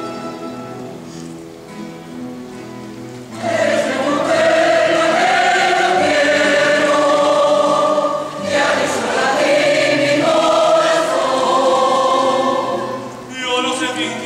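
A rondalla performing: a mixed choir sings full sustained chords, backed by the group's plucked-string instruments. A quieter passage opens, then the whole choir comes in loudly about three seconds in, with a brief dip past the middle.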